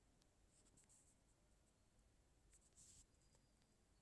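Near silence: faint room tone with a few soft, brief scratchy ticks, twice in small clusters.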